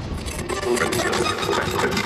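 Podcast intro sound design: a dense, crackling noise full of rapid clicks, with music and faint voice-like tones beneath.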